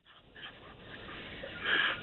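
Breathy noise over a telephone line, with line hiss, growing louder toward the end just before the caller speaks.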